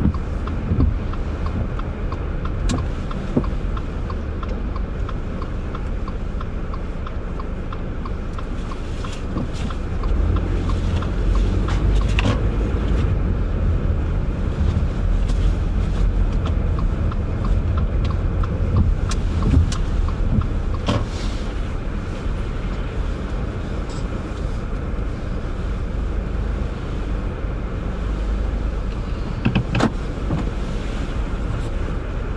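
A car driving in city traffic on wet pavement: a steady low engine and road rumble that swells as the car gets moving and eases again as it slows in traffic. A faint, regular ticking runs through the first several seconds.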